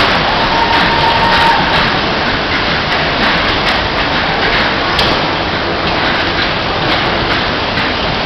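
Loud, steady din of bumper cars running around a dodgem rink, with a few short knocks.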